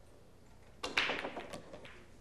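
Pool break shot in nine-ball: a sharp crack a little under a second in as the cue ball smashes into the racked balls, followed by a quick scatter of ball-on-ball and cushion clicks that die away within about a second.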